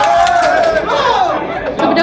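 Crowd chatter: several people's voices talking over one another.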